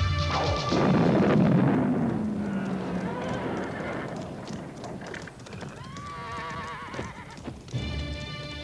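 Film sound effects of horses: a loud rush of hooves and commotion in the first few seconds, then a wavering horse whinny about six seconds in.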